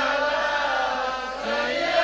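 A voice chanting in the melodic style of a Bengali waz sermon, holding one long note that fades slightly and swells again near the end.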